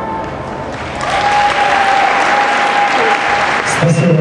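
Audience applauding at the close of a dance number, swelling about a second in. A single steady high tone is held over the clapping until near the end.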